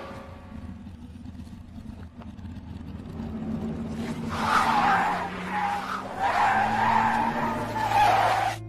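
Race-car sound effects played backwards: a low engine rumble, then from about halfway two long stretches of loud tire skidding and squeal with a brief gap between them.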